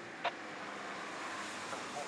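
Fiat Tipo sedan driving past on a track: steady engine and tyre noise that swells slightly as the car comes close, with one sharp click about a quarter second in.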